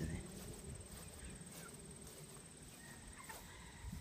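Footsteps swishing through grass, with a few faint short chirps and a thin steady high whine behind them.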